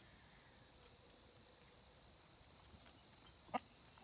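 Near silence with a faint steady high-pitched tone, broken once about three and a half seconds in by a single short call from one of the backyard poultry.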